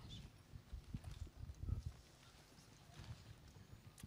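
Faint, irregular low thumps and rustle from a handheld microphone being handled, mostly in the first two seconds.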